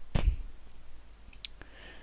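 A few short computer mouse clicks over a low steady background hum.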